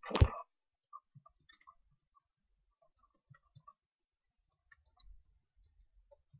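Faint, irregular clicks of computer keyboard keys as a chat message is typed, after a short louder noise right at the start.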